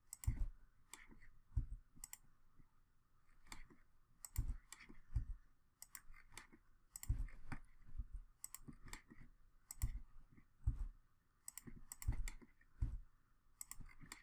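Computer mouse and keyboard clicking at an irregular pace while lines are drawn in CAD software, with many clicks coming in quick pairs.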